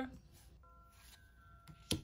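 Trading cards being handled, with one short sharp click near the end as the next card is pulled from the pack, over a faint quiet background with a few thin steady tones.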